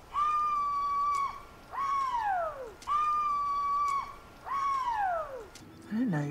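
A woman calling out "whoo-hoo!" twice in a high voice: each time a long, level "whoo" followed by a "hoo" that slides down in pitch.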